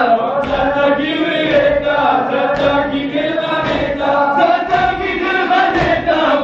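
A crowd of men chanting a Shia mourning lament (nauha) together, with a recurring line about Sakina. Underneath the chant runs a steady patter of low thuds from chest-beating (matam).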